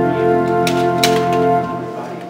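Organ playing sustained chords that fade away near the end, with two sharp clicks about a second in.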